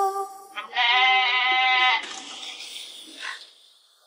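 Female vocal from a background song: a held note ends, then a second long note wavers with vibrato for about a second before fading away.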